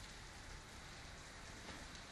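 Faint, steady background hiss with no distinct events.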